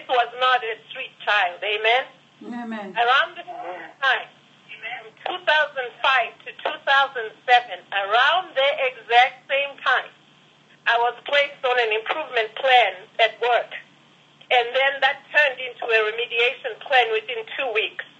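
Speech only: a woman talking steadily, with a few short pauses.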